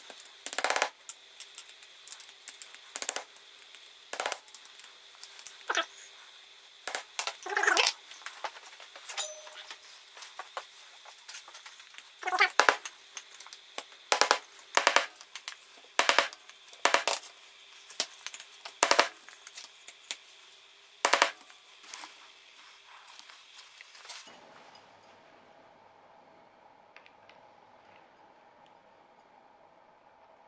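A series of sharp, irregular knocks, some in quick pairs, as a new tapered roller bearing is driven onto a pillar drill's spindle that has been chilled in a freezer to help the bearing go on. The knocking stops a few seconds before the end.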